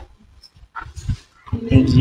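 Soft rustling and handling of a gift box and its paper, then a loud laugh near the end.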